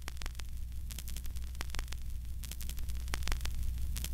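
Static lead-in noise at the head of a music track: a steady low hum with irregular crackling clicks, slowly growing louder.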